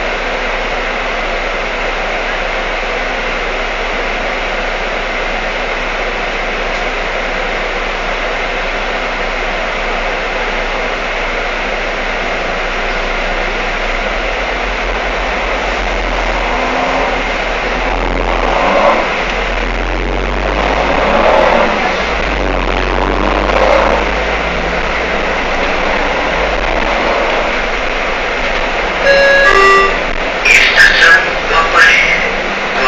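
Steady engine and road noise heard from inside a moving BRT bus, with a deep low rumble that swells through the second half in several louder surges. A short series of electronic tones sounds near the end.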